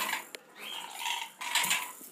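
Light clattering and rustling of a dusky lorikeet's toys against its wire cage as the bird tosses them about, with a sharp click shortly after the start.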